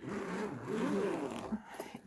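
Zipper on a padded fabric pencil case being pulled open in one continuous run that stops about a second and a half in.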